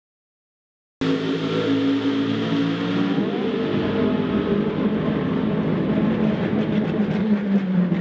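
BMW M3 DTM race car's V8 engine running as the car comes down the pit lane toward its pit box, starting abruptly about a second in and holding a steady note that shifts about three seconds in.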